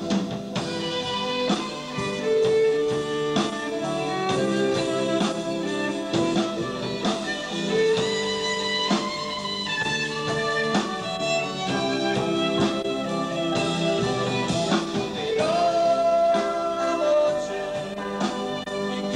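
A live gospel band plays a song with keyboard, electric bass guitar and drum kit, while a man sings.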